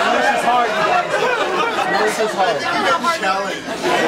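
A room full of guests talking over one another, a loud, indistinct chatter of many voices.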